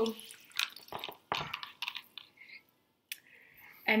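Scattered short knocks, clicks and wet sounds as a plastic spray-trigger head is handled and fitted onto a glass bottle of vinegar and bicarb soda that is fizzing over.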